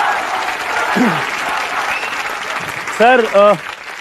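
Studio audience applauding, the clapping thinning out over about three seconds. A brief vocal sound comes about a second in, and a man's voice starts speaking near the end.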